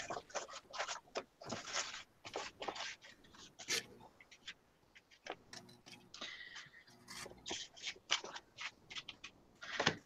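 Paper being handled on a work table: faint, irregular rustling with small scrapes and taps.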